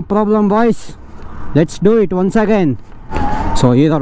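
A man's voice calling out drawn-out 'oh, oh' sounds, the pitch swinging up and down in several bursts, over a steady low rush of wind and road noise.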